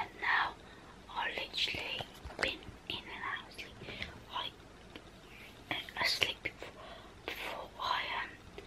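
A girl whispering to the camera in short, breathy phrases, with no voiced tone.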